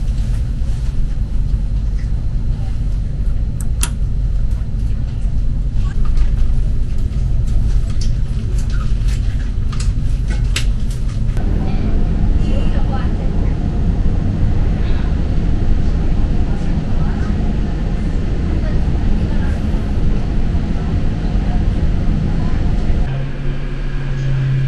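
Steady low rumble of an ITX-MAUM passenger train running, heard inside the carriage. Scattered sharp clicks come in the first half.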